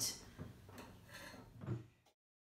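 Faint clinks and taps of a metal spatula against a baking sheet and a wire cooling rack as cookies are moved across, with a slightly louder knock near the end.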